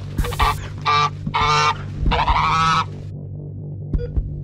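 Grey domestic goose honking: four loud, harsh honks in quick succession over the first three seconds, the last drawn out the longest.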